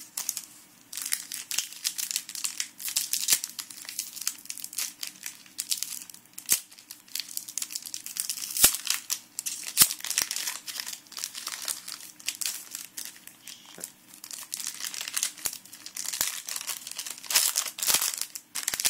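Foil wrapper of a Yu-Gi-Oh booster pack crinkling as it is handled and torn open, a dense run of crackles starting about a second in.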